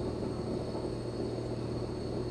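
A neighbour's electric drill running steadily, its motor giving an even hum heard through the wall.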